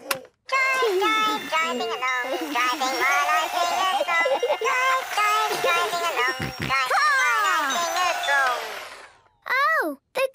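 A battery-powered toy car playing a tune as it drives. The tune fades out and stops about nine seconds in, because the toy's batteries have run flat.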